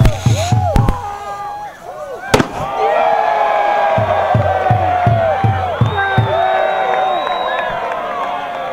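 Sharp bangs as the bonfire is set off in a blast, the loudest a little over two seconds in. A crowd then shouts and cheers over music with a steady drumbeat.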